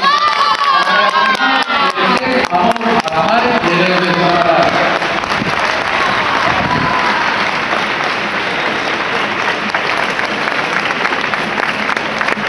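Crowd noise: voices over scattered claps, turning into a steady wash of applause and cheering about five seconds in.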